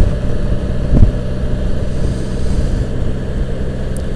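Can-Am Spyder RT three-wheeler's Rotax 1330 ACE inline-three engine running at a steady cruise, under wind and road noise. A brief thump about a second in.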